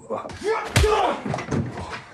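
Fight sound from a film: a heavy slamming blow about three-quarters of a second in, among men's grunts and shouts.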